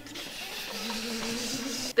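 An improvised drum roll: a steady hissing rattle with a low hum under it from about a third of the way in, cut off sharply just before the end.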